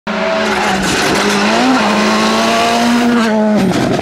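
VW Polo GTI R5 rally car's turbocharged four-cylinder engine held at high revs as it passes at speed, with a brief rise and dip in pitch about halfway. Near the end the revs drop sharply as the driver lifts off for the bend.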